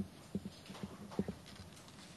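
Soft, irregular knocks and taps from things being handled on a conference table, about eight in two seconds.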